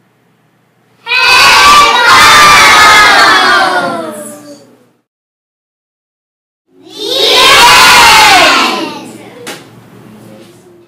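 A group of young children shouting together in two loud bursts, the first starting about a second in and lasting about three seconds, the second starting about two seconds after it ends and lasting about two seconds.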